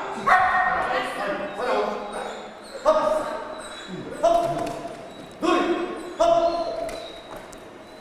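A dog barking about six times, roughly a second apart, each bark starting sharply and trailing off.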